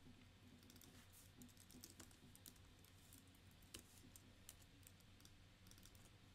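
Faint, irregular keystrokes on a computer keyboard as code is typed.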